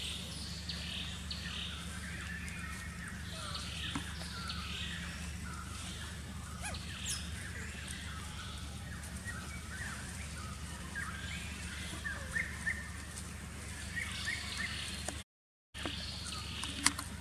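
Outdoor ambience of birds chirping and calling over a steady low hum, with a brief drop to silence near the end.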